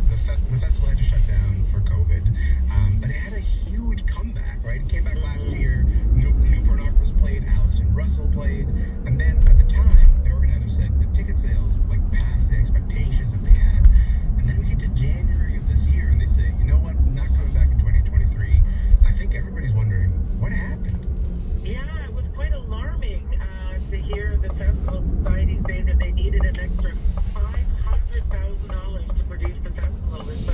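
Car cabin noise while driving: a steady low rumble of engine and tyres on the road, with indistinct talk-radio voices underneath.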